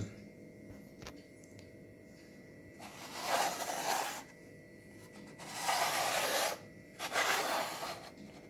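A person breathing close to the microphone: three breathy exhalations of about a second each, the first about three seconds in, over quiet room tone.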